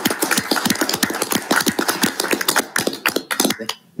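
Applause from a small group: quick, irregular hand claps that die away about three and a half seconds in.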